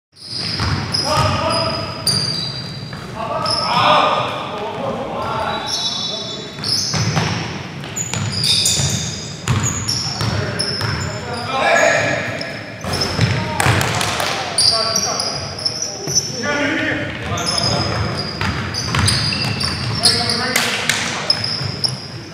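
Indoor basketball game: sneakers squeaking on the gym floor, the ball bouncing, and players calling out, all echoing in a large hall.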